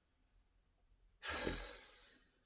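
A man sighs once: a breathy exhale that starts suddenly a little over a second in and fades away, after a second of near silence.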